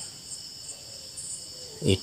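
Steady high-pitched chirring of insects, with a man's voice starting near the end.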